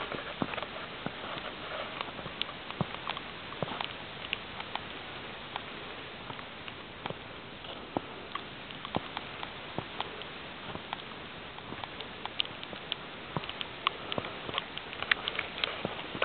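Mixed wet snow and sleet falling, pattering in irregular light ticks over a steady hiss.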